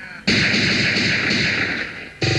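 A loud, crackling noise-burst sound effect dropped into a jungle/ragga radio mix. It starts suddenly about a quarter second in and cuts off just under two seconds later.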